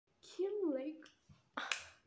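A young woman's voice makes a short wordless sound with a gliding pitch, then a brief loud breathy hiss near the end.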